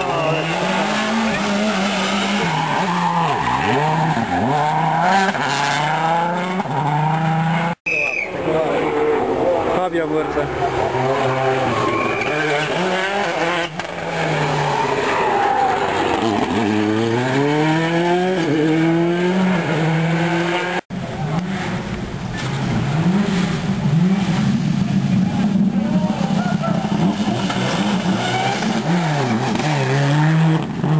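Rally cars passing one after another at full attack, their engines revving hard. The pitch repeatedly climbs and drops through gear changes and braking for the corners. The sound cuts out for an instant twice where separate passes are joined.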